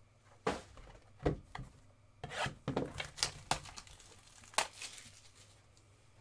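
Cardboard trading-card packaging being handled and opened by hand: a run of short scrapes, rubs and tearing rustles, the sharpest about four and a half seconds in.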